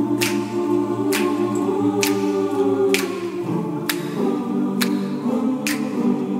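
Mixed SATB choir singing a cappella, holding wordless 'uh' chords that swell and fade and change pitch a couple of times. Crisp finger snaps keep time about once a second.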